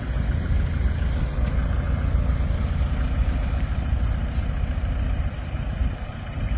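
Truck engine idling, a steady low rumble.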